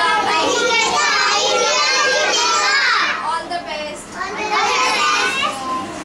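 A group of young children shouting together, their high-pitched voices overlapping, with a brief lull about four seconds in.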